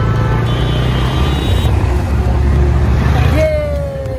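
Wind buffeting the microphone and the engine and road rumble of a moving motorbike in city traffic. A brief high steady tone sounds from about half a second in for roughly a second.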